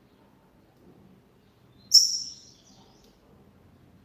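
A double-collared seedeater (coleiro) gives one short, high-pitched note about two seconds in, sharp at the start and fading within half a second, over a faint low hum.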